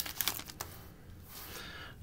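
Foil wrapper of a Bowman Chrome baseball card pack crinkling as it is peeled off the cards: a run of quick crackles in the first half-second, fading to faint rustling.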